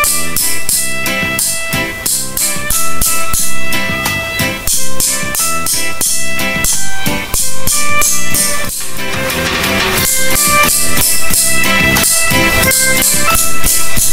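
Instrumental backing track for a children's sight-reading song: a drum kit keeps a steady beat while a pitched instrument plays the short stepwise melody in 2/4.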